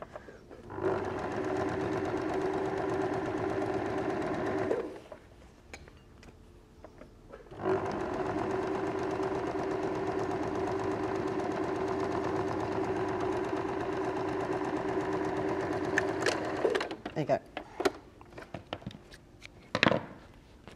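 Electric domestic sewing machine stitching a seam in two steady runs, about four seconds and then about nine seconds, with a short pause between. After the second run come a few clicks of fabric handling.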